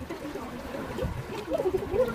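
Shallow seawater lapping and trickling among shoreline rocks.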